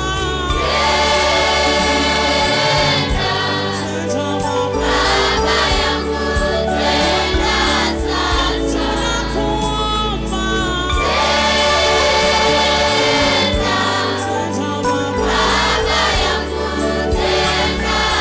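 Gospel music: a choir singing over a band accompaniment with a steady bass line.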